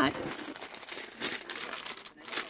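Clear plastic zip-top bag of beads crinkling as it is handled, a continuous run of crackles.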